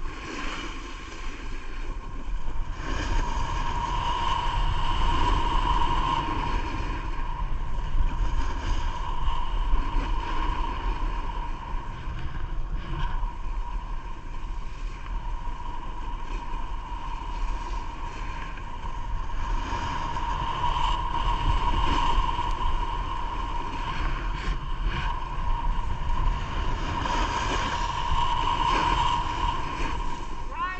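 Wind rushing over a body-worn camera's microphone on a fast run down a groomed ski slope, with the hiss of sliding over packed snow. It swells louder twice as speed builds and eases between.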